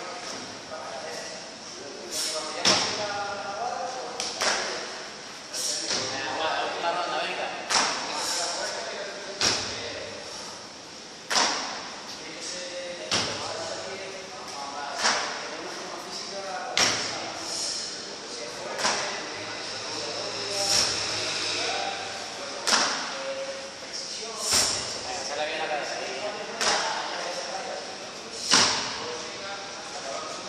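Repeated box-jump landings: a sharp thud of feet landing on a wooden plyo box, recurring at a steady pace of about one every two seconds.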